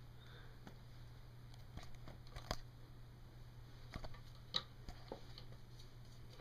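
Faint, scattered light taps and scrabbles of a ferret's claws as it moves about and climbs at a wooden dresser, with the sharpest clicks about two and a half and four and a half seconds in, over a steady low hum.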